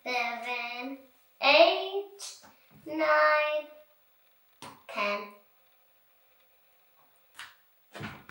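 A young child counting aloud in a drawn-out, sing-song voice: four numbers spaced about a second and a half apart.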